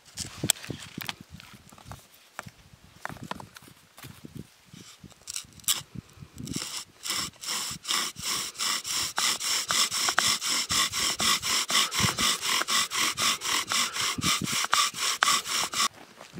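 Bow drill at work: a yucca spindle spun in a cedar fireboard by fast, even back-and-forth bow strokes, about four a second, each with a dry grinding friction sound, burning in the first divot. Before the bowing starts, about six seconds in, there are scattered knocks and crunches as the set is put in place on the snow.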